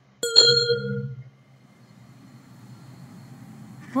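A single bell-like ding about a quarter second in, ringing out for about a second, from the coursebook audio playing through the computer. A faint low hum follows.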